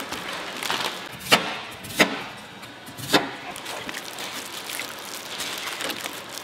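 Wet kelp sheets being lifted and worked by hand in a stainless-steel tray of broth: water splashing and dripping, with three sharp knocks in the first half.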